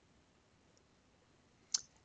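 Near silence, then a single sharp mouse-button click near the end.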